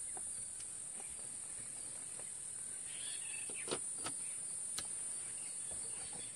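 Steady high-pitched drone of insects in the forest, with a few sharp clicks a little past halfway.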